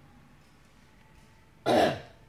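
A quiet room, then near the end a single short, loud throat clearing.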